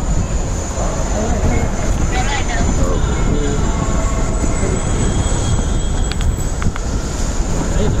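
Steady low rumble of outdoor traffic with wind on the microphone, and people talking faintly in the background; a few short clicks about six to seven seconds in.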